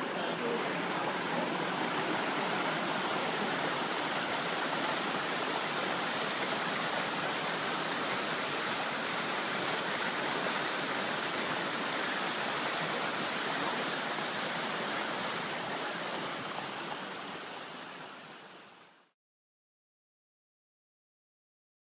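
Steady rush of flowing water, even and unbroken, that fades out near the end and then stops.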